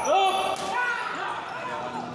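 Sports shoes squeaking on an indoor badminton court floor as players move, several short squeaks that rise and fall in pitch, with a sharp racket hit on the shuttlecock about half a second in.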